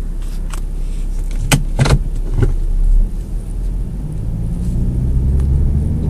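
Ford Mustang's 3.7 L V6 and road noise heard from inside the cabin as the car drives slowly, a low steady hum that gets a little louder near the end. A couple of sharp knocks come about one and a half to two seconds in.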